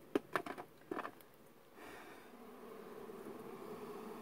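A few quick cracks and knocks in the first second as hands work inside a smoked rock-crevice honeybee nest, then a faint steady buzz of disturbed bees that grows slowly louder.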